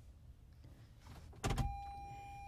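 A car-interior storage compartment clicks open with a short clunk about one and a half seconds in, after a quiet stretch. A steady high tone starts just after the clunk and holds.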